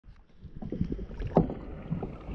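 Kayak paddles dipping into lake water in irregular small splashes, with one sharper, louder splash about one and a half seconds in.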